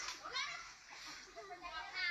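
Children's voices chattering and calling out in short, high-pitched utterances.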